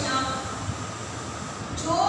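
Steady background noise, a low rumble with hiss, filling a brief pause between a woman's spoken sentences.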